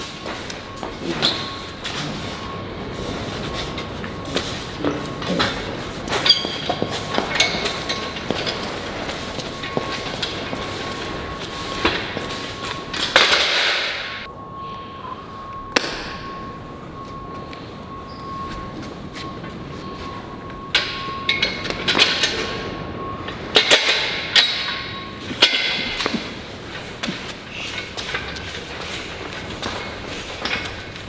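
Irregular thuds and clanks from a heavy steel carry frame being walked and set down on a concrete floor, over a steady rushing background. A thin steady tone runs under it and stops about 25 s in.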